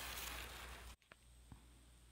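Faint room hiss that cuts out abruptly about a second in, leaving near silence broken by two faint ticks.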